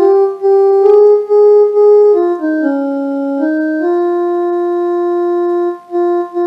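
Electronic keyboard playing a single melody line in steady held notes: the Raga Yaman sargam phrase Ga Ma' Ma' Pa Pa Pa, Ga Re Sa Re Ga in C sharp. It steps up from Ga to Pa, dips down to Sa around the middle and climbs back to a long held Ga. It is a guide phrase for the learner to sing along with.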